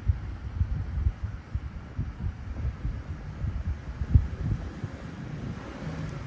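Low rumbling background noise with irregular soft thumps.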